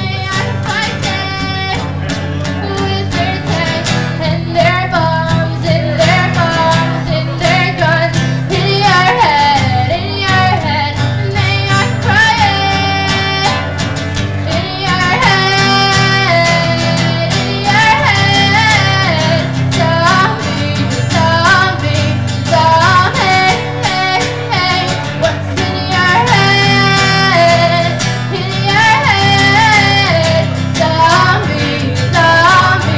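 A woman singing into a microphone, accompanied by a man strumming an acoustic guitar, played live.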